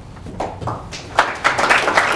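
Audience applauding. A few scattered claps come first, then it builds into full applause about a second in.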